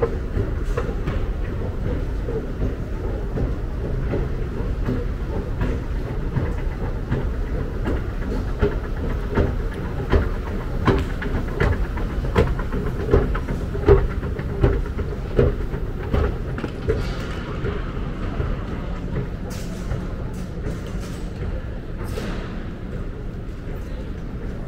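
Escalator running: a steady mechanical rumble with a rapid clatter of the steps. The clatter is thickest in the middle and eases off in the last third into a more even hall noise.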